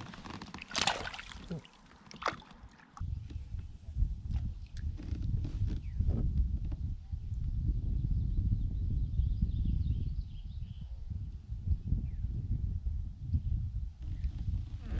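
A splash and a few knocks in the first seconds as a channel catfish is let go from a kayak back into the water. Then a continuous low, uneven rumble of outdoor noise on the microphone.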